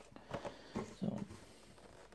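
A few light knocks and rustles of a cardboard Funko Pop box being handled and set down.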